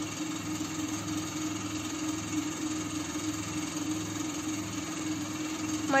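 Steady low machine hum with a faint regular throb.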